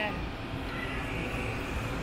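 Steady low rumble of a moving road vehicle, heard from inside it as it travels along a city street.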